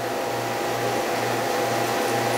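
A steady hum of an electric motor and fan with an even rush of air, under it a low drone that wavers a few times a second.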